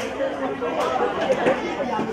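Chatter of several people talking at once, their voices overlapping with no single speaker standing out.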